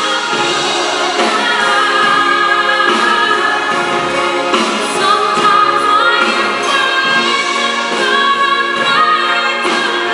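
Female vocalist singing a power ballad live with a microphone, holding long high notes, backed by a live orchestra with strings.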